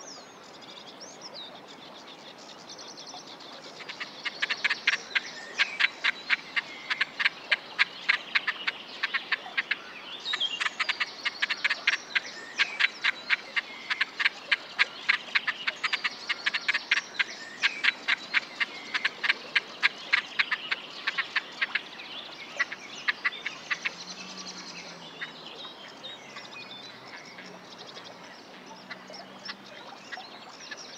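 Great crested grebes calling: long runs of sharp, rapid clicking notes, several a second. They start about four seconds in, break briefly around ten seconds, and run on until a little past twenty seconds. Faint chirps of small birds are heard around them.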